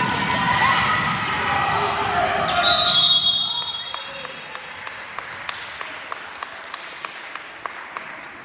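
Spectators shouting during play, then a referee's whistle blown once about three seconds in. After it, a basketball is bounced steadily on the hardwood gym floor, about two to three bounces a second.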